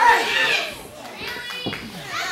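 Wrestling audience in a hall calling out and shouting in high voices, loudest at the start, with a short thud about one and a half seconds in.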